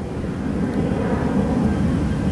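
Steady low rumble of outdoor background noise with no clear events.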